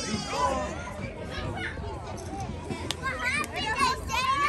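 Young voices shouting and calling out across a soccer field, with a short burst at the start and more calls from about three seconds in, over open-air background noise.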